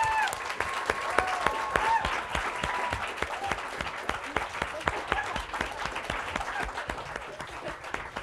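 Audience applauding and clapping, slowly easing off. A long held call from a voice rises over the clapping for the first three seconds.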